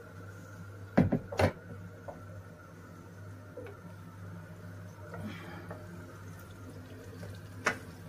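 Butter melting in hot oil in an enamel pot, faintly sizzling over a steady low hum. Two sharp knocks about a second in and another near the end.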